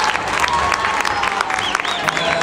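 Audience applause: many hands clapping, with crowd voices.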